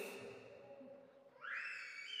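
A man's voice dying away in a reverberant hall, then a quiet pause, then a breathy in-breath into a handheld microphone starting about a second and a half in.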